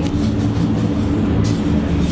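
Steady low mechanical drone of a restaurant's ventilation, the extraction over a charcoal grill drawing up the smoke; a hum of several low pitches that holds even and loud throughout.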